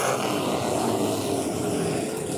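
A pack of factory stock race cars' engines running past on the dirt track in a steady, dense drone of several engines at once.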